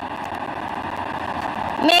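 Steady background noise of a large crowded hall, heard through the microphone during a pause in a speech. A woman's voice comes back in near the end.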